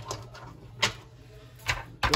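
A few short, sharp clicks; the two loudest come a little under a second apart.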